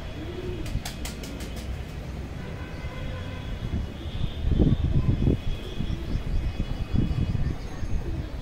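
Aviary birds over a steady low rumble: a dove coos once near the start, faint high budgie-type chirps run through, and a quick run of sharp clicks comes about a second in. Heavy low thumps, the loudest sounds, come around the middle and again near the end.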